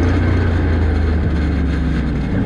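Can-Am Outlander 650 ATV's V-twin engine running at low speed while rolling slowly over dirt, a steady low drone that shifts slightly in pitch about halfway through.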